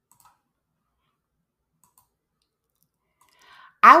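Two faint computer mouse clicks, about a quarter second in and about two seconds in, over near silence; near the end a breath, then a voice starts speaking.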